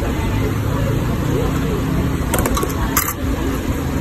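Busy cafe background: a steady low rumble with indistinct voices. A few sharp plastic clicks come about two to three seconds in as the takeaway container is handled.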